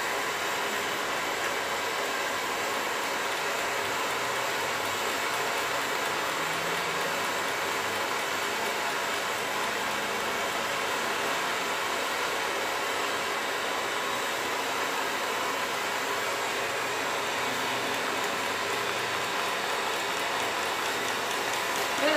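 Blowtorch flame hissing steadily against the hot end of a small Stirling engine.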